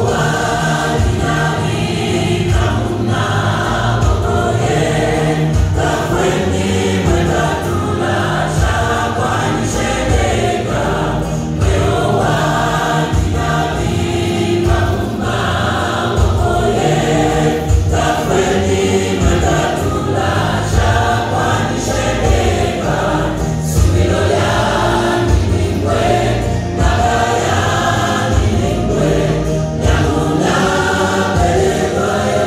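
Gospel choir singing over a steady beat.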